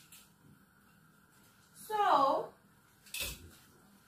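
A short utterance from a voice with falling pitch about two seconds in, then a single sharp knock about a second later, typical of a kitchen utensil set down on a counter; otherwise quiet room tone.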